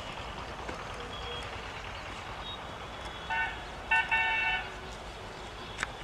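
A vehicle horn honks twice a little past the middle, first a short toot and then a longer one, over a steady outdoor background hiss. A faint click comes near the end.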